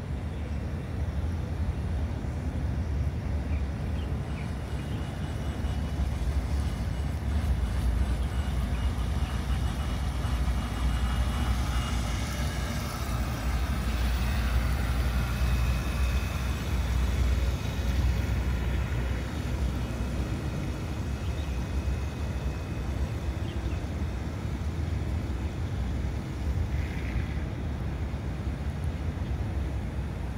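Radio-controlled model boat running on the water. Its faint motor whine and wake splash grow louder from about 12 to 19 seconds in as it passes close, then fade. A steady low rumble runs underneath throughout.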